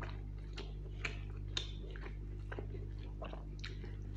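Close-up wet chewing and mouth smacks of a mouthful of rice and chicken liver curry, mixed with the squish of fingers working rice and gravy on the plate. It comes as a string of short sticky clicks, the sharpest about a second and a second and a half in.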